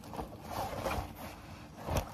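Rustling and handling noise as a fabric backpack is opened and packed, with a short low thump near the end.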